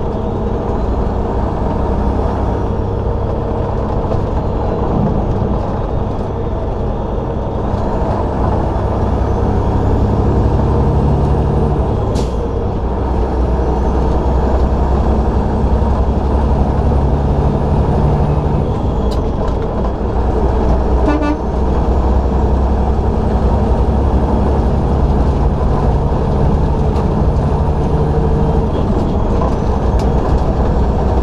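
Semi-truck's diesel engine and road noise at highway speed: a loud, steady low rumble whose engine note rises for a few seconds several times. A faint high sweeping whine and a short rattle of ticks come partway through.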